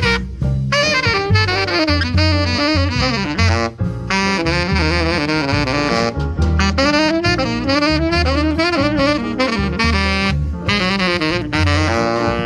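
Saxophone soloing in a small jazz combo, playing quick runs of notes in phrases with brief pauses between them, over upright bass and keyboard accompaniment.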